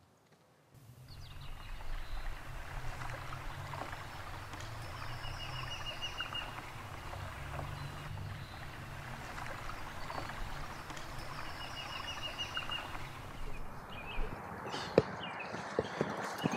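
Outdoor ambience that cuts in about a second in: a steady low rumble with small birds chirping, including a quick high trill heard twice. A few sharp knocks come near the end.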